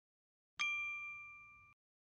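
A single bright ding, a bell-like chime sound effect marking the change to the next slide. It strikes about half a second in and rings down over about a second before it cuts off.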